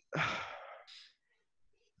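A person's long, breathy sigh lasting about a second, tailing off.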